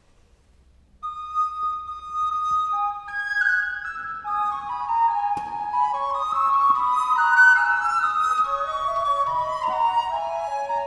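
Two wooden recorders playing a duet of interweaving lines. The first enters alone about a second in, and the second joins below it a couple of seconds later.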